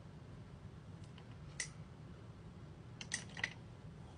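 A single sharp click about one and a half seconds in, then three quick clicks near the end, over a low steady hum.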